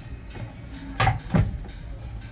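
A wooden pizza serving board being set down and slid onto a tabletop, with two short knocks about a second in.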